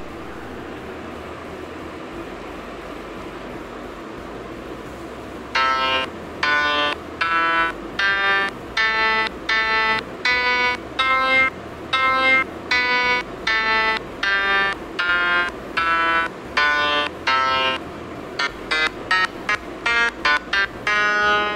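An Android phone's piano app playing single sampled notes as its on-screen keys are tapped one at a time, at changing pitches, about one every two-thirds of a second, then a quicker run of notes near the end. The first note comes after about five seconds of steady hiss.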